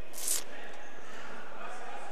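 Steady background noise of a sports hall with faint distant voices, after a short breathy hiss near the start.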